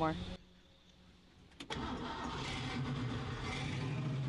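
A classic Ford Mustang's engine starts with a sharp click about a second and a half in, then runs steadily as the car pulls away.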